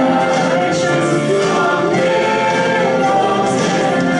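Music with a choir singing held notes at a steady level.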